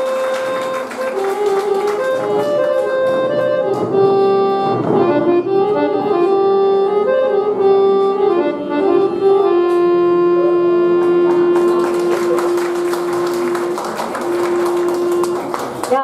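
Harmonium playing a melodic phrase in Raag Shivranjani, its reeds sounding steady sustained notes, with tabla accompaniment. In the second half it settles on one long held note that runs almost to the end, with a brief break shortly before.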